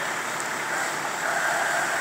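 Steady rushing noise of a working structure fire, the fire apparatus running and the blaze burning, with no distinct knocks or bangs.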